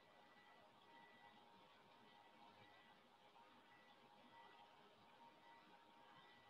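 Near silence: faint room tone and hiss, with a faint steady high-pitched whine.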